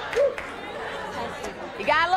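Studio audience chattering, a murmur of many overlapping voices, with one short voiced exclamation just after the start.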